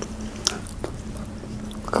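A person chewing and biting food close to the microphone, with a couple of sharp clicks about half a second and just under a second in.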